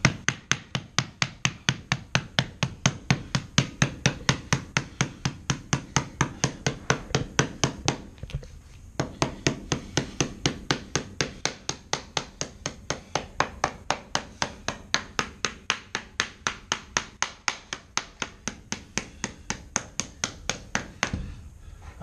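Rubber mallet tapping a rubber T-molding transition strip down into its track, working along it from one end: a fast, even run of light knocks, about four or five a second, with a short break about eight seconds in.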